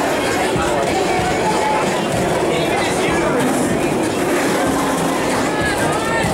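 Voices of a crowd and skaters over a steady rolling noise of many roller-skate wheels on a wooden rink floor.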